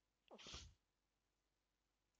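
A man's brief breathy sigh, falling in pitch, about half a second in; otherwise near silence.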